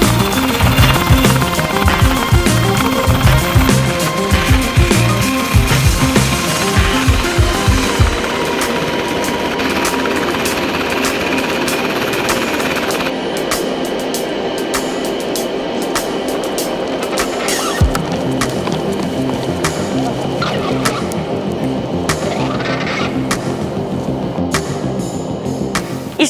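Background music over the rapid, steady beating of a UH-60 Black Hawk helicopter's rotor, which fades out about eight seconds in; the music then carries on alone.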